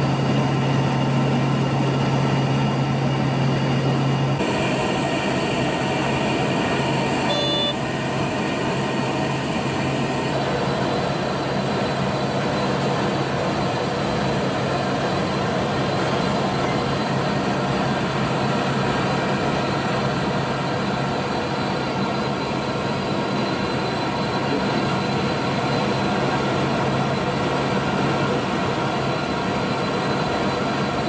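Steady drone of an LC-130H Hercules' four turboprop engines and propellers, heard from inside the flight deck in flight. A strong low hum under it drops away about four seconds in.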